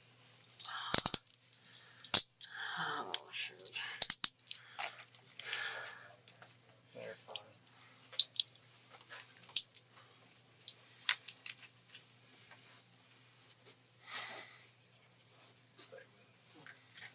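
Handcuffs being handled at a man's wrists: a run of sharp metallic clicks and clinks, the loudest two about one and two seconds in, with rustling and shuffling of clothing between.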